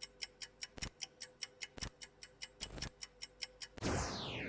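Countdown-timer sound effect: fast clock-like ticking, about five ticks a second with a heavier tick once a second, over a faint steady tone. Near the end a louder hit sets off a falling sweep, signalling that time is up.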